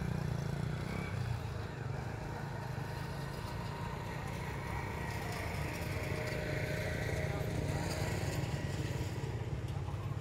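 Steady low rumble of outdoor background noise, with faint voices far off.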